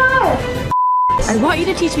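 A long held note slides down and breaks off, then a single short, pure electronic beep sounds in a moment of silence, followed by music and voices starting up.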